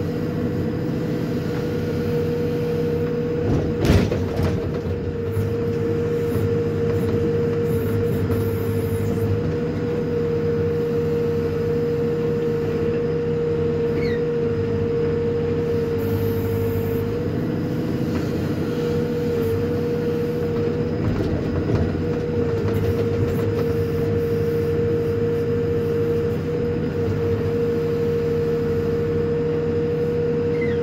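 Hidromek HMK 102S backhoe loader running under load from the cab while the backhoe digs, its diesel engine and hydraulics making a steady drone with a constant whine. A sharp knock about four seconds in.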